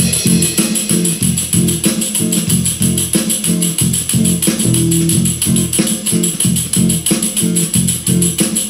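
Plastic tambourine shaken in a steady, quick rhythm, its jingles playing along with recorded backing music.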